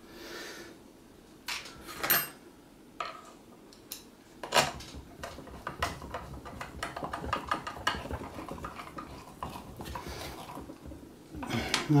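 Hand screwdriver setting and driving a screw into the robot's collar assembly. A few sharp clinks come first, then a long run of small, quick clicks and scrapes as the screw is turned in.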